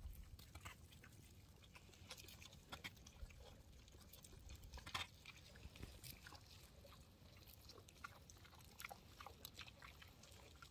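Faint, scattered crunching and rustling from sheep moving and feeding on frozen straw, with a louder crunch about halfway through; otherwise near silence.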